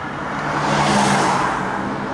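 A car passing close by in the street, heard from inside a stationary car: its road noise swells to a peak about a second in and then fades, over a low steady hum.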